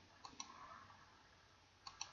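Faint computer mouse clicks: two quick clicks near the start and one more near the end.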